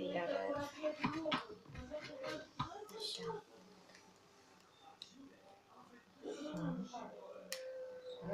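A girl's voice talking softly, with a quieter pause of a couple of seconds in the middle and a few light clicks.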